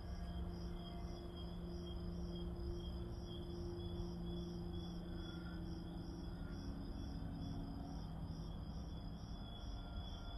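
Faint night ambience: a steady low hum under regular high chirps about twice a second, typical of crickets.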